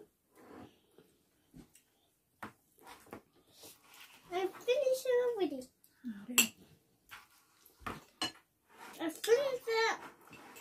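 Metal cutlery clinking and scraping on a ceramic dinner plate as someone eats, in a run of separate sharp clinks. A child's voice comes in twice between them.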